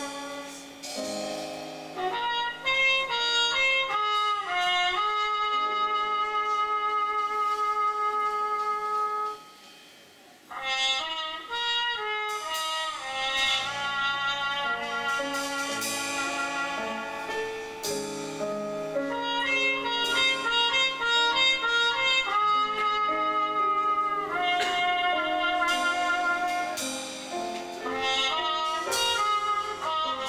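A live jazz-leaning band playing, with a trumpet leading a melody of held and stepping notes over electric bass, drum kit and keyboard. The music drops nearly out for about a second, around ten seconds in, then comes back in.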